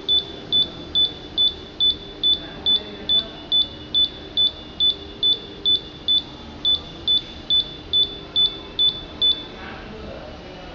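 Electronic buzzer giving short, high beeps at one pitch, a little over two a second, as the touch-screen lamp dimmer's up button is pressed over and over to raise the lamp's brightness. The beeps stop shortly before the end.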